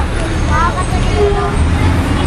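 Crowd sound from a busy street: several voices talking over a steady low rumble of traffic.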